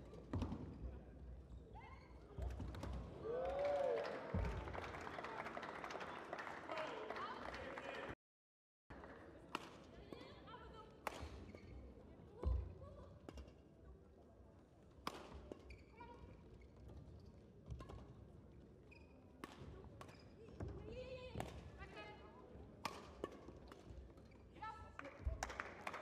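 Badminton rackets striking a feather shuttlecock in a doubles rally: sharp single hits at irregular intervals, over indistinct voices in a sports hall. The sound drops out entirely for about half a second some eight seconds in.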